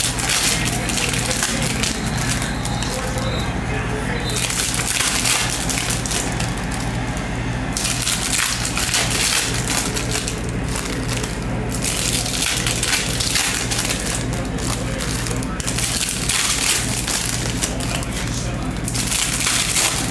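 Foil wrappers of Bowman Chrome trading-card packs crinkling and tearing as packs are opened by hand, in uneven stretches, over a steady low hum.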